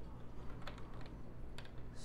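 Light plastic clicks and taps of LEGO bricks being handled and pressed into place on a model, a few scattered sharp ticks.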